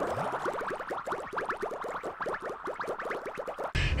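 Short electronic intro jingle, a rapid stream of quick rising synthesized notes, ending abruptly near the end.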